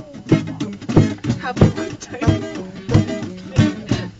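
Guitar strummed in a steady rhythm, a strong chord stroke about every two-thirds of a second.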